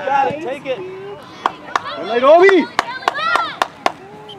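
Spectators' voices calling out, with one long shout that rises and falls in pitch near the middle. In the second half come a quick, irregular run of sharp clicks or knocks.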